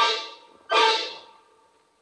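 Orchestral brass band playing two loud chords, the second about 0.7 s after the first, each struck and left to die away: the music cue opening the second act of the radio drama.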